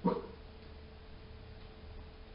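A dog barks once, a single short bark at the very start, then only a faint steady hum remains.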